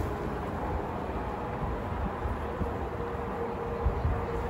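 Honeybees buzzing around an open hive over a steady low rumble, with a faint steady buzz tone coming in about halfway through. A single soft knock near the end as a wooden frame is lowered into the hive box.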